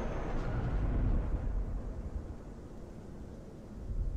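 A low, dark rumble used as an eerie ambient sound bed, swelling over the first second and then slowly fading.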